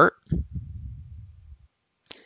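A computer mouse click, heard as a single low thump, followed by a faint low rumble that fades out over about a second.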